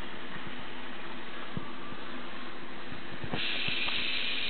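Small DC gear motors of a tracked robot running steadily, a constant hum and hiss with a few light clicks from the tracks on carpet; a higher hiss grows louder about three seconds in.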